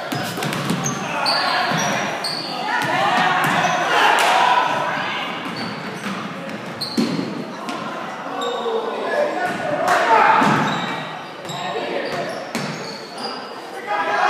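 Basketball game in a gym: a ball dribbling on the hardwood floor, many short sneaker squeaks, and players and spectators shouting, echoing in the large hall. The shouting swells twice, about four seconds in and again around ten seconds.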